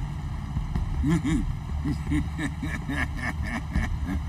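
Steady low rumble of a crab boat's engine and deck machinery running.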